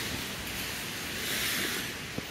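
Steady hiss of rain falling on a wet, slushy street, swelling briefly about a second and a half in.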